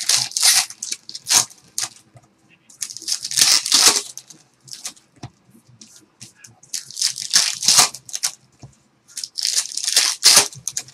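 Foil trading-card pack wrappers crinkling and tearing as they are handled and ripped open, in several loud bursts a couple of seconds apart.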